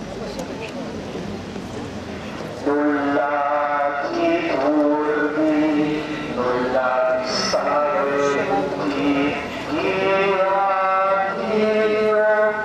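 Low murmur, then from about three seconds in a voice singing a slow religious chant or hymn in long held notes that step up and down.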